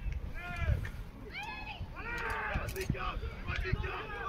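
Several loud shouts from players and spectators during a live American football play, each call rising and falling in pitch, over a low outdoor rumble.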